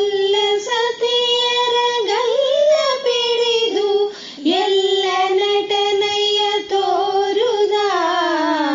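A female voice singing a Kannada devotional song in raga Gowri Manohari. She holds long, steady notes with short ornamented turns between them and takes brief breaths about two and four seconds in.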